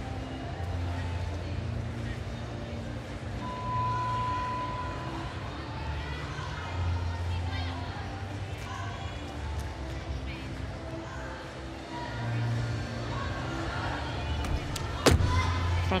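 Arena ambience of crowd murmur with music playing in the hall. About a second before the end comes a single sharp thud as a gymnast lands a front tuck on the balance beam.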